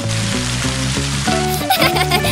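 Cartoon background music under a steady hiss of spraying water. Near the end a child's giggle begins.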